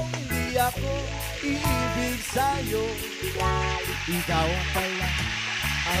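Cooking oil sizzling and bubbling in a frying pan with small fish frying in it, a steady hiss. Background music with singing plays over it.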